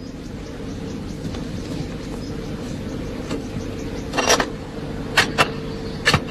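A steady low hum with a few sharp knocks from a hand tool at work. The loudest knock comes about four seconds in, followed by two quick ones close together a second later.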